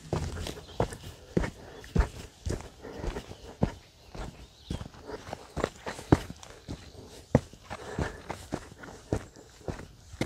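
Footsteps of a person walking at a steady pace along a dirt footpath, about two steps a second.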